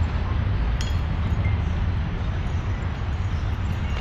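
City street background noise: a steady low rumble, with one faint click about a second in.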